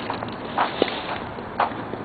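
Footsteps on a paved sidewalk: a steady walking pace of about two steps a second, each step a short sharp scuff, over a low street background.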